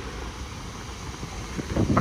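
Strong wind blowing across the microphone: a steady low rumble with a hiss over it.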